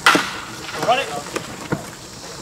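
Wooden baseball bat cracking against a pitched ball once, a single sharp hit at the start, followed by brief shouts from the crowd.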